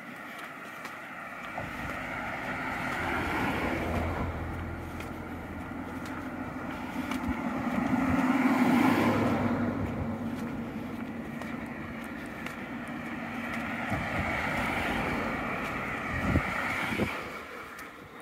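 Cars passing on the road beside the walkway in several swells of tyre and engine noise, loudest about nine seconds in, with a couple of low knocks near the end.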